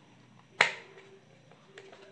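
A single sharp click about half a second in, dying away quickly, then a couple of faint clicks near the end: hands handling things on the workbench.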